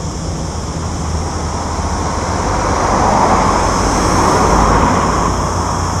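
A vehicle driving past on the road, its tyre and engine noise building to a peak about three to four seconds in and then fading as it moves away.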